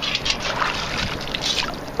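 Water and sand sloshing and draining through a perforated metal sand scoop as it is shaken, with a small metal bottle cap rattling inside.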